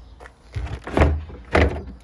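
Vauxhall Grandland X boot floor board being lifted by its handle to open the under-floor storage well: a few knocks and thumps of the panel against the boot trim, the loudest about a second in.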